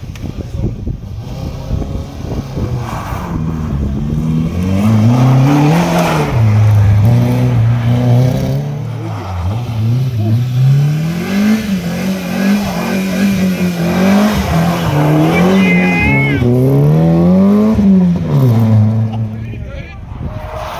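Rally car engine on a snowy stage, its pitch rising and falling over and over as the driver works the throttle, growing louder as the car approaches and passes, then dropping away near the end.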